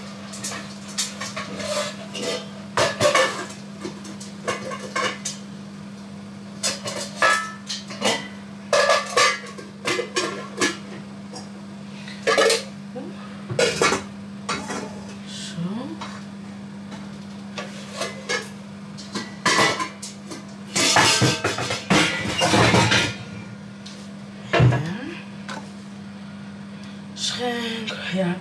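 Metal pots, pans and lids clattering on a gas hob and steel counter as they are handled: a string of sharp clanks and knocks, busiest about three quarters of the way through, over a steady low hum.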